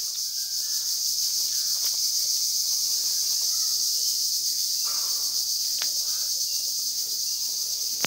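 A steady, high-pitched chorus of insects, with a few faint clicks.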